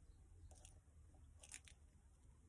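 Near silence, with a few faint scratchy strokes of a water brush dabbing white pigment ink onto textured card, about half a second in and again around one and a half seconds.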